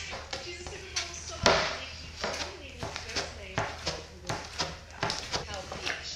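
Lump of clay being wedged by hand on a board on the floor: irregular dull thuds as it is pushed and slapped down, the loudest about one and a half seconds in.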